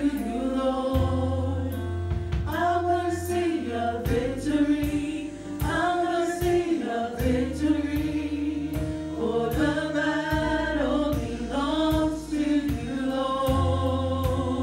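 Live gospel worship song: a group of singers with electric bass, keyboard and drum kit, the bass holding long low notes under regular drum and cymbal hits.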